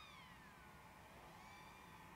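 Near silence, with a faint thin whine that dips in pitch and rises again.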